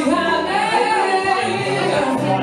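A man singing live over his own acoustic guitar, holding one long sung line that rises and wavers.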